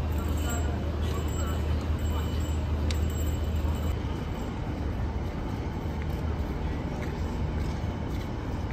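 Street ambience: a steady low rumble of vehicle traffic that eases about halfway through, with people talking nearby.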